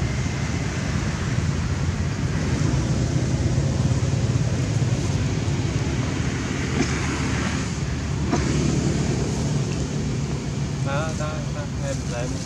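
Steady low rumble of outdoor background noise, with a short wavering high call near the end.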